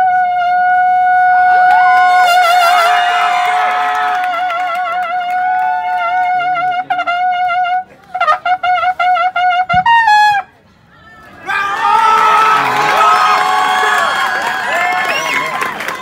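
A Mexican military bugle (corneta de órdenes) holds one long note with a strong vibrato. It then plays a few short repeated notes and ends with a falling slur. After a brief pause, a crowd cheers loudly.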